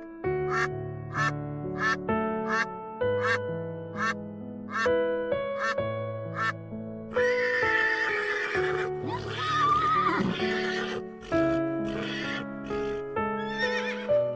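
Background music with steady, even notes. Over it, domestic ducks quack in a regular series, about one quack every two-thirds of a second, through the first half. Then comes a stretch of breathy noise and a brief wavering call from a horse.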